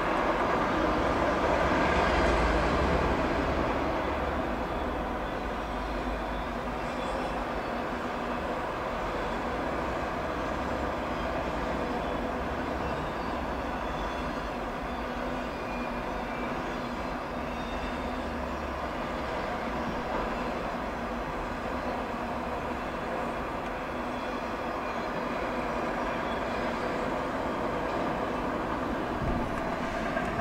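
CSX freight train's autorack cars rolling steadily past, wheels running on the rails, a little louder in the first few seconds.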